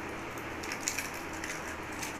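An eggshell being pulled apart by hand, with a few faint crackles about a second in as the egg drops onto a bowl of flour, over a steady background hiss.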